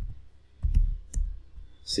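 Computer keyboard keystrokes: a few sharp key clicks about half a second apart, each with a dull low thump under it, as a command is edited and entered at a terminal.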